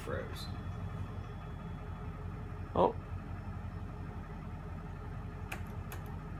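Steady low machine hum from the CNC milling machine standing still, its program stalled rather than cutting. A man says a brief "oh" near the middle, and there is a faint click near the end.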